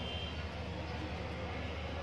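Steady low background rumble of outdoor ambience, with no distinct sounds standing out.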